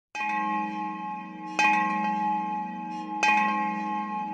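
A bell struck three times, about one and a half seconds apart, each strike ringing on with several steady tones that overlap the next.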